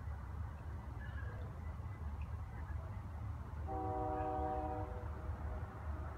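A horn sounds once, held steady for just over a second, about two-thirds of the way in, over a steady low background rumble.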